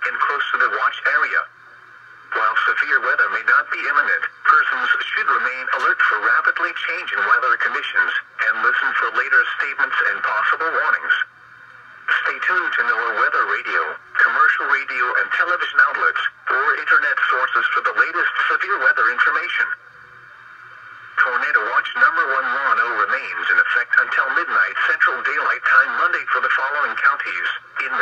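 NOAA Weather Radio's automated voice reading a severe weather statement through a weather radio's small speaker, sounding thin and tinny. It pauses briefly three times between phrases.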